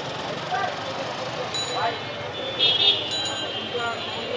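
Busy street-market ambience: a crowd chattering and traffic passing. About three seconds in, a brief high-pitched sound, the loudest thing here, cuts through.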